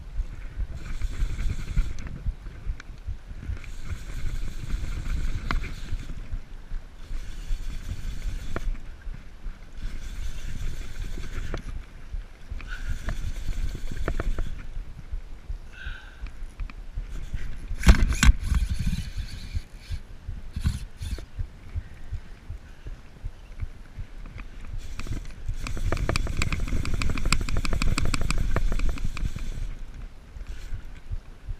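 Fly reel buzzing in repeated bursts of a second or two, with a longer run of several seconds near the end, as line goes on and off the spool while a hooked tarpon is fought. A low rumble of wind and handling on the microphone lies underneath.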